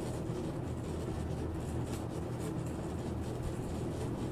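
Faint tapping and rubbing of a thumb on an iPhone 5s home button as it is lifted and rested repeatedly for fingerprint scanning, over a steady low hum and hiss.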